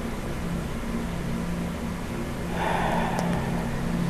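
Steady low mechanical hum over room hiss, with a brief soft noise swelling about two and a half seconds in and lasting about a second.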